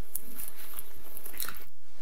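Loose sheets of paper being handled and rustled close to a lectern microphone, with a few short crinkly crackles.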